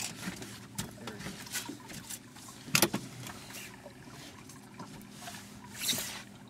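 Handling noise: scattered clicks and knocks with rustling as a caught walleye and fishing rod are handled. The loudest knock comes about three seconds in.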